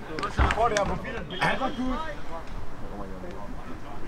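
Footballers' voices calling out across an outdoor pitch, with no clear words, and a single dull thud about half a second in.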